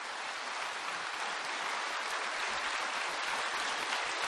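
A large hall audience applauding steadily, growing a little louder.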